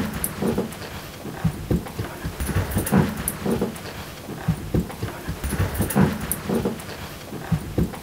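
A small dog and its handler moving about on a carpeted floor: irregular soft thumps and scuffs of paws and footsteps, a few each second.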